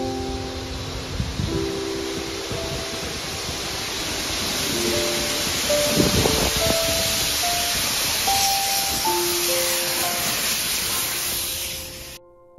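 Steam locomotive and its carriages running into a platform, a broad steam hiss and running noise that grows louder as the train comes close, under background piano music; the sound cuts off suddenly at the end.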